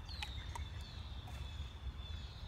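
Quiet woodland background: a steady low rumble, with a faint, thin, high bird call that slides slightly down in pitch, heard twice.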